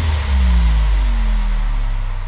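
Frenchcore remix at a beatless transition: a heavy sub-bass drone holds under slow downward pitch sweeps and a fading wash of noise, with no kick drum.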